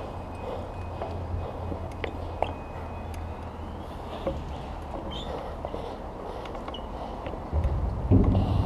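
Light clicks and knocks from a stunt scooter being handled over a low steady rumble. Near the end a louder rumble starts as the scooter's wheels begin rolling on concrete.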